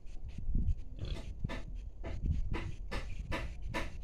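Rapid breathy panting close to the microphone, about three breaths a second, over a steady low rumble.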